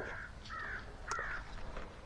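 A crow cawing three times, faint, each caw short and harsh, about half a second apart.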